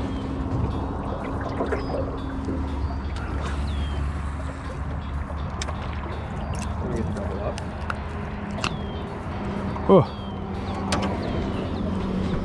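Electric trolling motor humming steadily on a small aluminium fishing boat, louder in the first half, with short high chirps and clicks over it.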